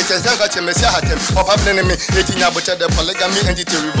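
Rapping over a hip hop beat, with deep bass notes that slide down in pitch and repeat quickly, coming in under the voice just under a second in.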